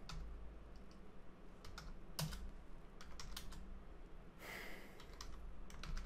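Faint keystrokes on a computer keyboard, typed in short irregular clusters as terminal commands are entered.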